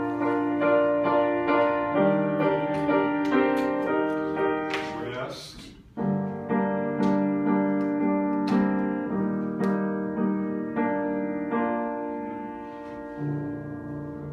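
Upright piano playing a choral accompaniment in sustained chords, with a brief break and a fresh chord about six seconds in, growing quieter near the end.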